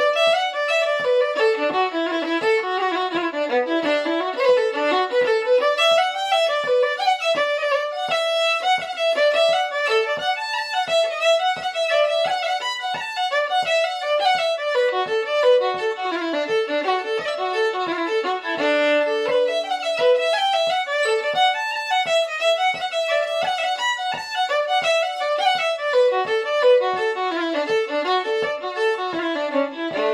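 Solo fiddle playing a fast Irish traditional tune, with busy running notes over a steady low tap that keeps the beat about twice a second. The tune closes on held notes near the end.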